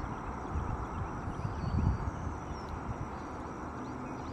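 Outdoor background noise at a marsh pond: a low, uneven rumble with a few brief swells, and faint high-pitched chirps in the distance.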